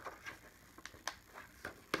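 A handful of light, irregular clicks and rustles from a sheet of paper stickers being handled against a planner page.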